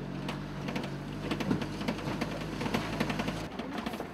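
Kia Bongo light truck's engine running with a low drone and a fast, rhythmic mechanical clatter as it drives; the drone drops away near the end.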